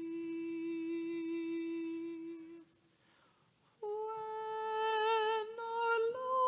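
A single voice singing a hymn slowly in long held notes. There is a breath pause about halfway through, then a higher held note.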